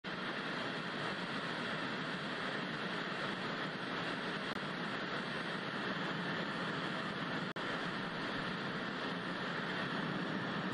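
Steady hiss of television static, an even white-noise rush, with a brief break about three-quarters of the way through.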